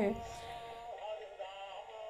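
A small toy figure playing an electronic sung tune, a synthesized voice holding steady notes.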